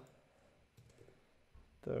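Several faint, scattered clicks from a computer mouse and keyboard as padding values are entered in the web design tool.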